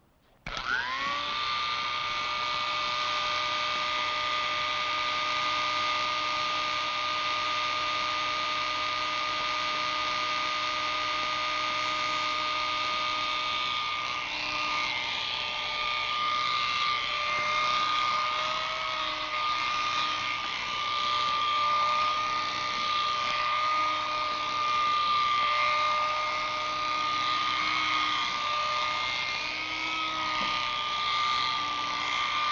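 Corded electric hair clippers switched on about half a second in, the pitch rising briefly as the motor comes up to speed, then running with a steady hum. From about halfway through the pitch and level waver as the blades cut through hair.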